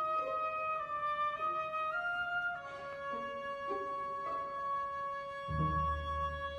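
Orchestral music for a ballet: a slow, high melody of long held notes stepping upward, then one note sustained for about three seconds. Deep low notes come in beneath it near the end.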